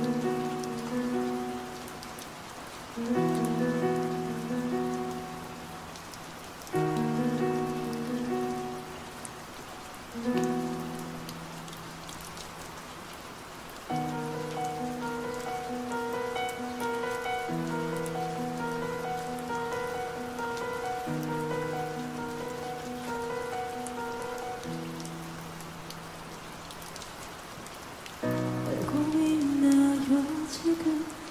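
Steady rain noise mixed under the slow instrumental intro of a ballad: soft sustained chords in phrases a few seconds apart, then a steady repeating figure from about halfway. A voice comes in near the end.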